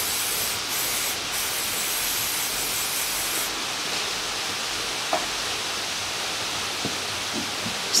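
Aerosol lubricant spray hissing steadily onto a suspension bolt and trailing-arm bushing. The hiss loses some of its sharpest top about three and a half seconds in.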